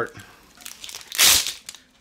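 A strip of strong hook-and-loop fastener being tugged and pulled from its plastic packet: one short, loud crackling rip a little over a second in, with fainter rustling around it.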